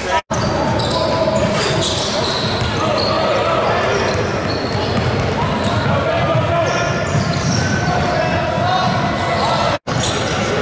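Basketball game sounds in a large gym: a ball dribbling on the hardwood floor under indistinct voices of players and spectators echoing in the hall. The sound drops out twice, briefly, just after the start and just before the end.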